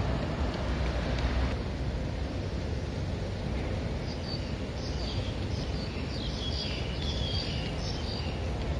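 Steady low rumble of wind and city background; about halfway through, small birds start chirping in quick, high, repeated calls.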